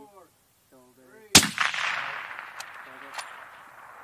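A spoken countdown, then a single shot from a suppressed, scoped precision rifle about a second and a half in. The report echoes and fades over the next two seconds, with two faint sharp ticks as it dies away.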